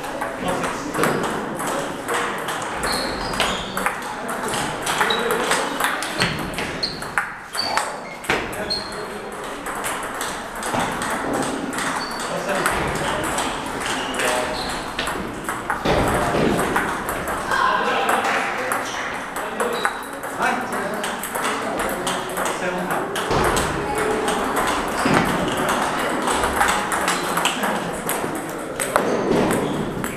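Table tennis balls clicking off paddles and bouncing on tables in rallies, the close match's hits mixed with the ball clicks of other games around the hall, over steady background chatter.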